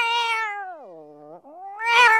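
A domestic cat yowling: one long, drawn-out call that slides down in pitch and fades about halfway through, then a second, louder yowl rising in near the end.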